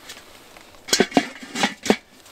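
Domed metal lid of a small portable charcoal kettle grill clanking down onto the bowl and being settled into place: a quick run of sharp metallic clanks in the second half.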